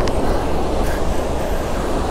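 Steady rush of surf and wind on the microphone, with a faint click or two.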